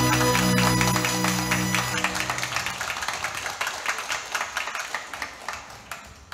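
A song with held chords ends about two seconds in, and a large crowd claps, the applause dying away toward the end.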